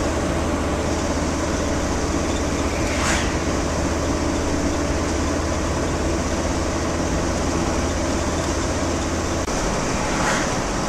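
Steady road and engine noise heard inside a moving VW T4 camper van, with a low drone under it. About three seconds in there is a brief whoosh as an oncoming car passes.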